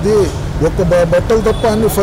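A man speaking steadily in Telugu into a close microphone, over a steady low rumble in the background.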